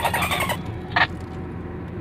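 Steady road and engine noise inside a moving car's cabin. A pitched sound dies away about half a second in, and a short high blip comes about a second in.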